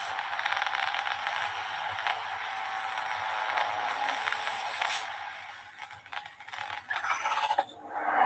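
Soundtrack of an animated intro video played over a video call: a dense, crackling, hissy rush of sound effects. It thins out and breaks up about five seconds in, then swells again near the end.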